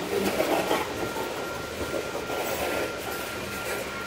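Freight train tank cars rolling past close by, their steel wheels rumbling and clacking on the rails, louder in bumps for the first second or so.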